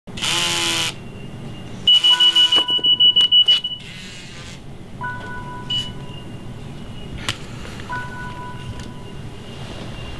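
An electronic alarm beeping in quick pulses on a high tone from about two to four seconds in, with a pair of steady lower tones sounding again every three seconds or so. A loud, short pitched sound opens it.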